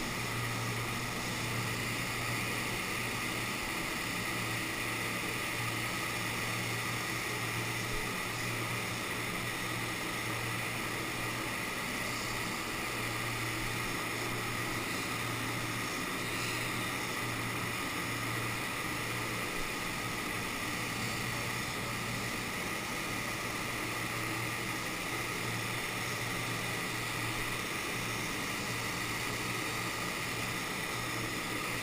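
Paint spray gun spraying: a steady rush of compressed air that does not break off, with a steady low hum underneath.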